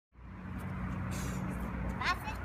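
A steady low motor drone, engine-like, with a short hiss about a second in.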